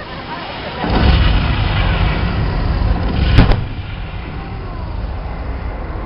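Stage pyrotechnic explosions at a water stunt show. A loud rumbling blast starts about a second in and runs on for a couple of seconds, ending in a sharp bang at about three and a half seconds, followed by a lower lingering rumble.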